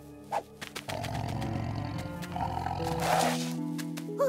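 A tiger growling, a low rumble lasting about two seconds that starts about a second in, over background music.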